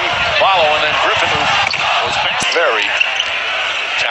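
A basketball being dribbled on a hardwood arena court over steady crowd noise and voices.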